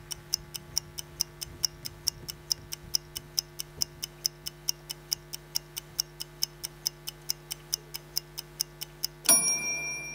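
Clock-like ticking played over the show's sound system: quick, even ticks, about three to four a second, over a low steady hum. A little after nine seconds in, the ticking gives way to a bright, ringing bell-like ding.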